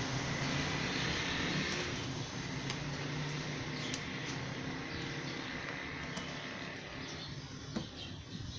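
Steady background noise with a faint hum, over which a screwdriver wrapped in a cloth gives a few light clicks and scrapes as it pries at a car door's window trim strip.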